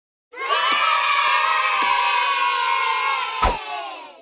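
Canned sound effect of a crowd of children cheering and shouting "yay", falling away at the end. Three sharp clicks cut through it, the last a heavier thump.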